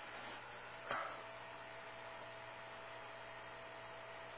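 Faint steady hiss with a single brief knock about a second in, typical of a handheld camcorder being moved; a faint steady tone sets in just after the knock.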